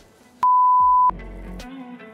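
A single steady electronic beep at one pitch, about two-thirds of a second long: a 1 kHz censor bleep. Faint low background music follows it.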